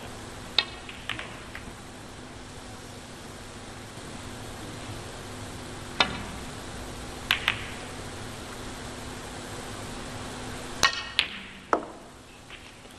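Snooker balls clicking: sharp, separate clicks of the cue tip on the cue ball and of ball striking ball, in small groups about a second in, around six and seven seconds, and a quick cluster of three near the end. Under them is a quiet, steady background with a faint low hum.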